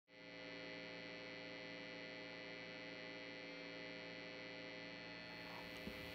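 Faint, steady electrical mains hum, a buzz made of several steady tones, with a light hiss coming in near the end.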